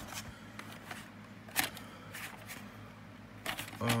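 Handling noise of a VHS cassette and its cardboard sleeve: a few sharp clicks, the loudest about a second and a half in, with light rustling between.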